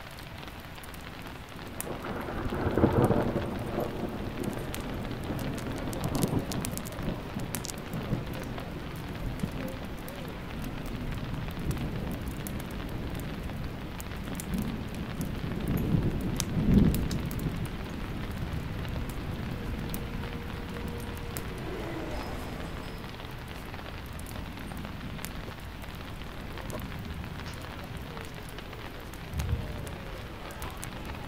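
Steady rain with rolls of thunder: one swells about two to four seconds in, and a slightly louder one about fifteen to seventeen seconds in.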